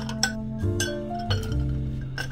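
Background music with held instrumental notes, over which a utensil clinks against a glass jar several times as iced coffee is stirred.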